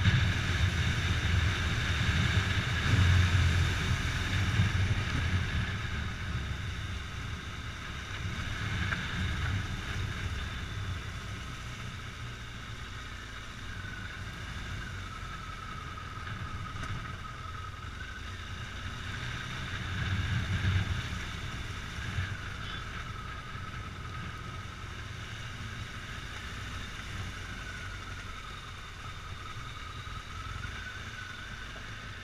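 Motorcycle engine running while the bike is ridden slowly along a gravel track. It is a low rumble that swells in the first few seconds and again about two-thirds of the way through, with a higher whine that rises and falls with the throttle.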